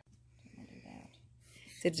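Faint, soft puffs of air from a hand-squeezed rubber bulb air blower, blowing wet acrylic pour paint across a canvas. A spoken word comes near the end.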